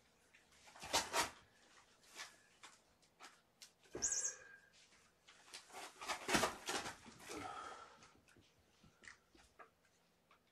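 Soft thumps and rustles of a person walking across a carpeted floor, bending down and sitting on it, with a few sharper knocks.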